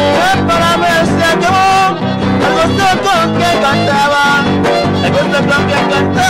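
A trío huasteco playing son huasteco: the violin carries the melody over the steady strumming of a small jarana huasteca and a large huapanguera.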